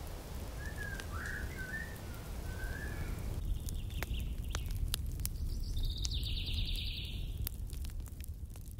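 Birds calling: a few short chirps in the first three seconds, then, after an abrupt change of background about three and a half seconds in, a higher trilling song twice. Scattered sharp clicks run throughout over a low steady rumble.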